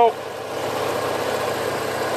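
Steady low mechanical hum, like an engine idling, under a faint even hiss.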